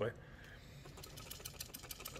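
Faint, quick plastic clicks and rattles from a Casdon toy Dyson stick vacuum's clear plastic bin as it is turned and handled, starting about a second in.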